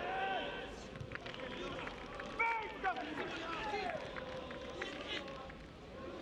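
Football stadium sound: voices shouting from the pitch or stands over steady crowd noise, with a few short knocks.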